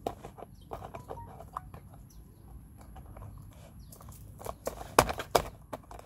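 Small plastic jar and its lid being handled by a child's hands: scattered light clicks and knocks, with a louder pair of knocks about five seconds in.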